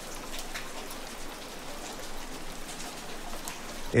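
Steady rain falling, an even hiss with faint scattered drop ticks.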